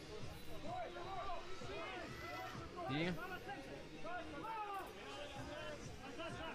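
Shouts and calls from players and onlookers at a beach rugby match, over a babble of background voices. A single commentator's voice cuts in briefly about three seconds in.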